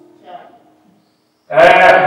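A man preaching: his phrase trails off into a pause of about a second, then about one and a half seconds in he resumes loudly with a long drawn-out word.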